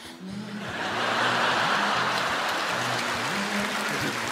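Audience applause and laughter swelling up about a second in and holding loud, over quiet backing music.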